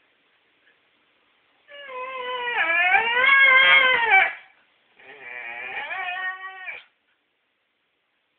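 Dog whining in two long, high-pitched drawn-out calls, a demand to be given a ball. The first starts about two seconds in and lasts about three seconds; the second is shorter and rises in pitch at its end.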